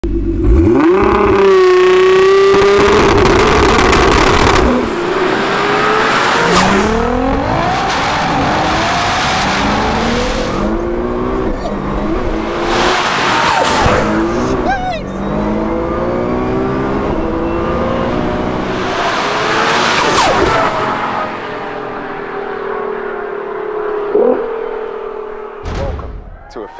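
Twin-turbo V6 of a heavily modified Nissan R35 GT-R revving and accelerating hard, its pitch climbing again and again as it pulls up through the gears, with the revs held high for a few seconds near the start.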